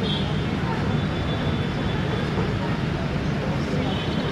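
Faint voices over a steady low rumble, with no clear putter strike.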